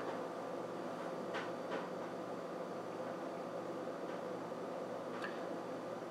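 Room tone: a steady low hum of background noise, with a few faint, brief rustles from hands handling a small cylindrical battery.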